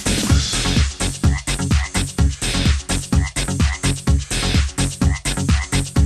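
Electronic dance track with a steady kick drum at about two beats a second, its mix carrying frog-croak sounds that repeat with the beat.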